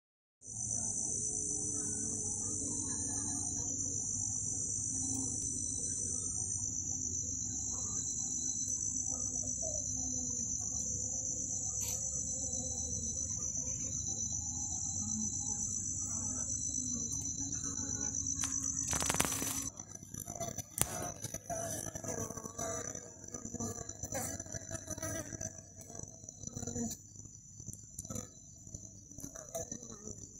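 Honeybees (Apis mellifera) humming on an open hive frame under a steady, high-pitched insect trill. About 19 seconds in there is a sudden loud noise, the hum stops, and soft clicks and rattles follow while the high trill goes on.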